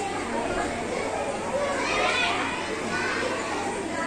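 Young children's voices chattering and talking over one another in a group.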